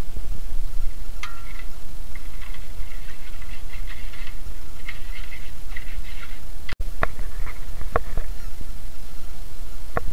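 Metal spatula stirring blended chilli paste in a simmering metal wok over a steady low rumble, with faint short high chirps in the first half. After a brief dropout about two-thirds of the way through, there are a few sharp clicks of the spatula against the wok.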